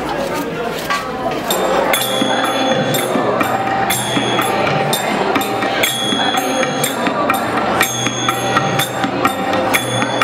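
Chatter of a crowded hall, then from about two seconds in, devotional bhajan music: a group singing with tabla and small hand cymbals striking a steady rhythm, each stroke ringing briefly.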